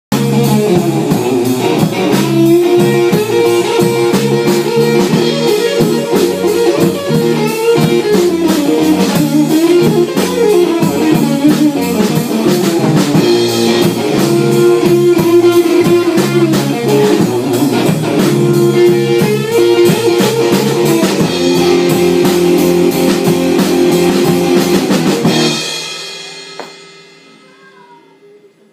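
Live rock trio playing a blues number on electric guitar, bass and drum kit. Near the end the band stops abruptly and the last notes die away.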